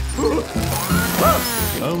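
Film soundtrack: music with a short rising-and-falling vocal cry, and a laugh near the end.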